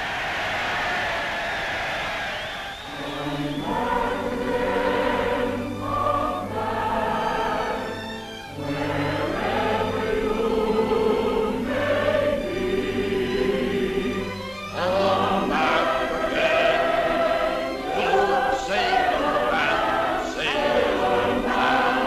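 A choir of massed voices singing with an orchestra, a slow anthem in long held notes.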